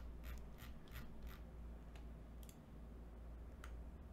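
Faint, even ticking of a computer mouse scroll wheel, about four ticks a second for the first second and a half, then two single clicks, over a low steady hum.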